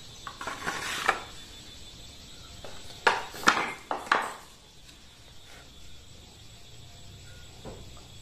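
Steel knife blades clinking and knocking as they are handled and set down, with a few light knocks near the start and a quick cluster of three or four sharper clinks about three to four seconds in.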